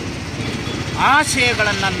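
Steady low rumble of road traffic engines. About a second in, a man starts talking loudly close to the microphone.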